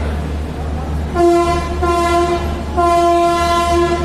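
Locomotive horn sounding from about a second in: two long blasts on one steady pitch, each with a brief dip, over a steady low hum.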